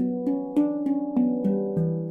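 Steel handpan in an E Low Sirena scale played with the fingertips: a run of about seven struck notes in two seconds, each ringing on under the next.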